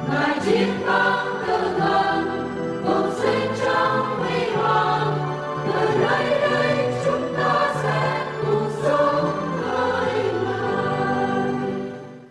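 A choir singing a slow sacred hymn with sustained held notes, beginning to fade out near the end.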